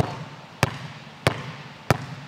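A basketball bouncing on a gym floor in a slow crossover dribble: four even bounces, about one every two-thirds of a second.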